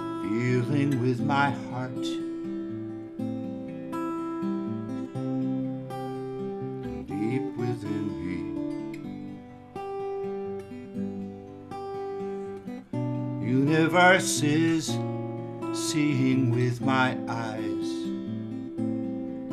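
Solo acoustic guitar playing the instrumental introduction to a song: picked chords ring on, with heavier strummed strokes about a second in and again near the end.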